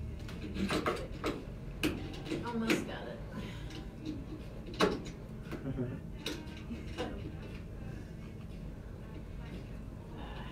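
Scattered clicks and knocks of studio microphone boom arms and stands being handled and repositioned. The knocks cluster in the first three seconds, and the sharpest comes about five seconds in.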